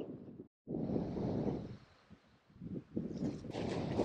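Wind buffeting the microphone in uneven gusts, with a brief dead silence about half a second in.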